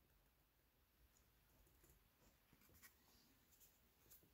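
Near silence: room tone, with one faint tick a little before three seconds in.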